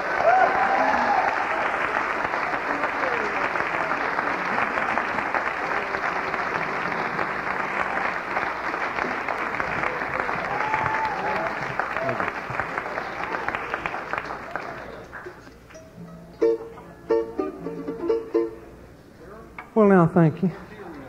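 Audience applauding and cheering after a bluegrass song ends; the applause dies away about fifteen seconds in, leaving a few short plucked-string notes.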